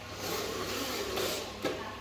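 Small drive motor and gears of a remote-control flatbed truck running as it drives across a tile floor, with one sharp click near the end.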